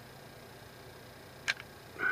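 A single sharp metallic click about a second and a half in, against faint room tone: the slide of a Walther P22 pistol, eased forward slowly, clicking over the hammer's hump and into battery.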